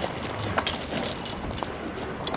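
Hand-crank rotary fuel transfer pump on a steel fuel tank being turned, giving a string of irregular clicks and rattles.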